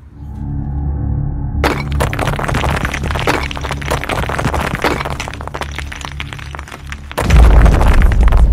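Logo-reveal sound design: a low drone swells, then from about two seconds in a long stretch of crumbling, shattering rock-debris sound effects, and a loud low boom near the end.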